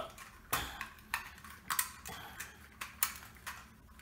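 Sharp plastic clicks and clacks, about half a dozen spaced roughly half a second apart, as the toy bullet train's plastic body is handled against its plastic track.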